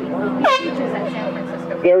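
A polo match's 30-second warning horn sounding one long, steady blast, signalling thirty seconds left in the chukker.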